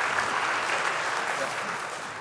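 Large audience applauding, the clapping slowly dying down toward the end.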